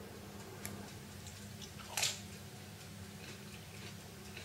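A single sharp crunch about two seconds in as a thin, crispy pizza crust is bitten, with a few faint ticks of handling and chewing around it over a low steady room hum.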